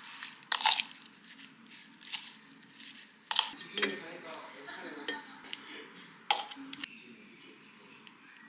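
Salad servers clinking against a bowl while arugula leaves are tossed in dressing, with a few sharp clinks spread through, then softer handling as the leaves are tipped out onto a plate.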